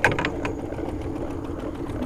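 Boat motor idling steadily, with a few sharp clicks at the very start.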